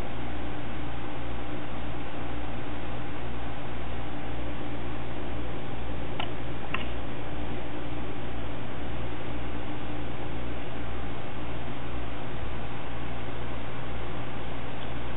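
Desktop PC's air-cooling fans running at speed with the CPU under full stress-test load: a steady whir with a low hum beneath it. Two faint clicks about six seconds in.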